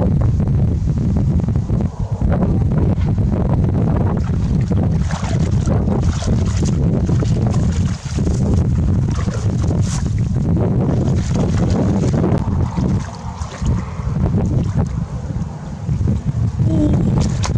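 Wind buffeting the camera microphone: a loud, steady low rumble that runs through the whole stretch, with faint splashing and rustling above it.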